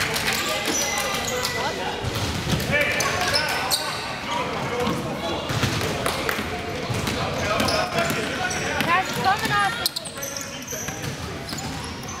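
Basketball being dribbled on a hardwood gym floor, with irregular bounces, amid spectators' voices echoing in a large gym.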